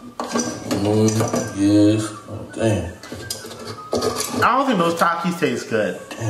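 Metal utensils clinking and knocking against pots and dishes in a kitchen, a series of short sharp clinks, with a voice over them.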